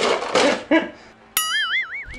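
Breathy laughter, then about one and a half seconds in a sudden twanging cartoon 'boing' sound effect whose pitch wobbles quickly up and down.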